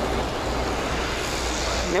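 Steady rushing outdoor noise with a low rumble under it, holding an even level throughout.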